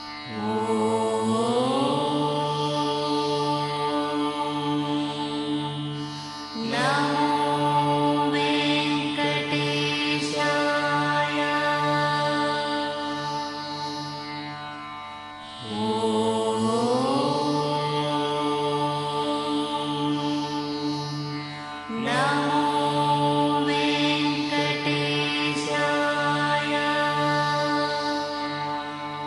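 Indian devotional music in a chant-like Carnatic style over a steady drone. Each phrase opens with a rising slide in pitch, and the same passage plays through twice.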